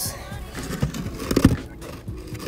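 Concrete lid of a ground-level meter box being lifted and shifted on its plastic box: a few knocks and scrapes, the loudest about a second and a half in, over background music.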